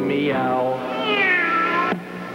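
Two long meows, each falling in pitch, one after the other, over a song's steady accompaniment: the gag answer to the lyric that the toothless roaring lion can only meow.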